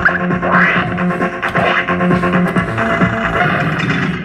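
Crazy Reels fruit machine playing its electronic jingle and beeps, with quick clicks throughout, as its feature counter steps up.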